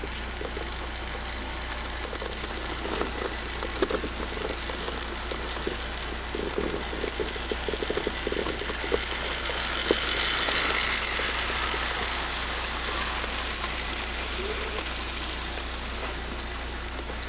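Electric model train rolling around a track, its wheels clicking and rattling over the rails. The sound grows louder as it passes close by about ten seconds in, then fades, over a steady hiss and hum.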